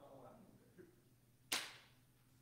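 Faint murmured voices, then a single sharp crack about a second and a half in that dies away over about half a second in the room's echo.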